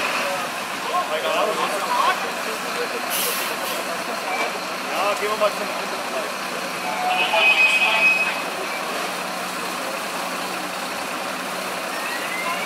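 Fire truck engine running steadily at the fire scene, with distant voices of fire crews over it and a brief high tone about seven seconds in.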